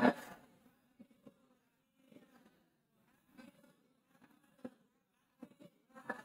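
Quiet room with a faint low buzzing hum and a few soft clicks.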